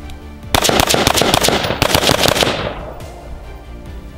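A BCM AR-15 carbine fires a fast string of semi-automatic shots for about two seconds, starting about half a second in, with the shots ringing out and fading.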